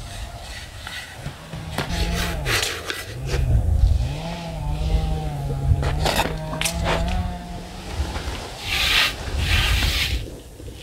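A cotton cloth rustling as it is pulled off the covered dough, with a few light knocks from handling. Under it, wind rumbles on the microphone and a steady low hum dips in pitch briefly and fades out near the end.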